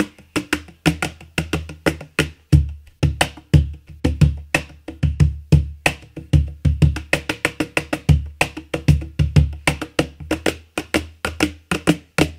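Kopf Percussion cajon, with a walnut body, a Karelian birch burl front plate and snare wires, played by hand in a fast groove: deep bass strokes mixed with bright snare slaps. At times a foot is pressed against the lower front plate while playing.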